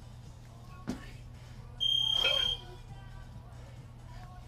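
A loud electronic beep, one steady high tone lasting under a second, about halfway through. A short knock comes about a second in, with the two kettlebells held in the rack between jerks.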